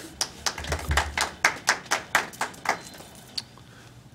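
Brief clapping from a few people in a meeting room, about a dozen claps at roughly four a second that stop about three seconds in.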